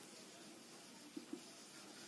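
Faint sound of a marker writing on a whiteboard, with two short soft taps a little past a second in.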